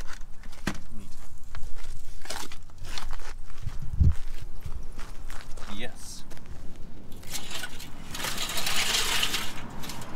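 Junk being handled by hand: scattered light knocks and clicks of metal and plastic, with a low thump about four seconds in and a loud rustling hiss for about a second and a half near the end.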